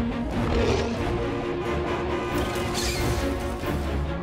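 Dramatic film score with sustained notes, mixed with action-scene crash and rumble effects from a movie chase scene.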